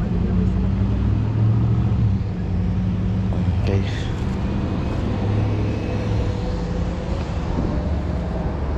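Steady low rumble of a car's engine and tyres heard from inside the moving car.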